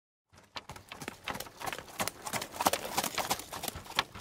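Horse-drawn carriage arriving: the horses' hooves clip-clopping in a quick run of strikes that starts about half a second in and grows louder.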